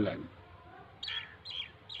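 A small bird chirping: three short, high chirps in the second half.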